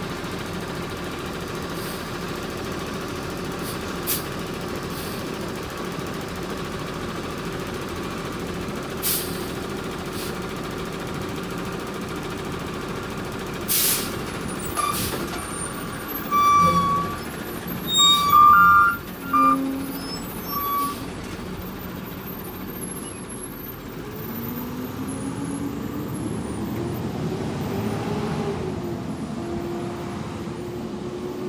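Automated side-loader garbage truck idling steadily, with several sharp air hisses typical of air brakes. In the middle comes a run of short, loud high squeals and knocks. From about 24 s the engine note rises as the truck pulls away.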